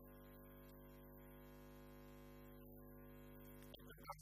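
Near silence: a faint, steady hum made of several unchanging tones, with no speech.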